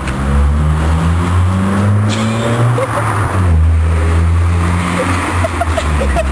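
An engine running steadily close by, its low hum drifting slowly up and down in pitch, under a steady rushing noise.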